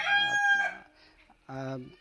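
Rooster crowing, its long held final note breaking off about two-thirds of a second in. A man's voice is heard briefly near the end.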